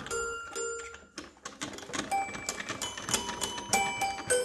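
Old toy piano being played by hand: a string of single notes pressed at an uneven pace, each a light strike that rings on briefly with a high, bell-like tone, some notes overlapping.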